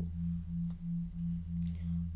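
A low droning tone that pulses about three times a second, over a deeper steady hum.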